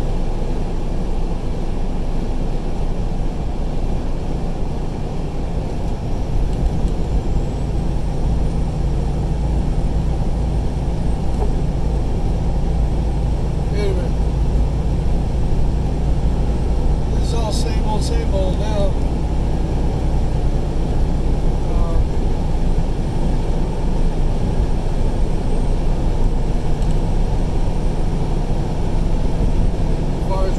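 Steady road and engine rumble inside a vehicle's cabin while driving at highway speed.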